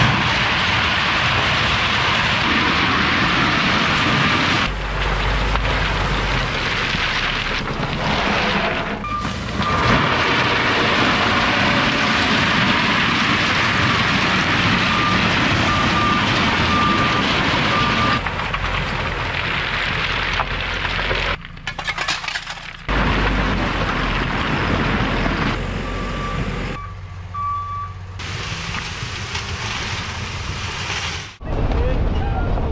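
Dump truck engine running while its raised bed spills crushed stone, the gravel rushing and rattling out onto the ground. The sound is loud and continuous, with a few abrupt changes in level and a faint high beep that comes and goes.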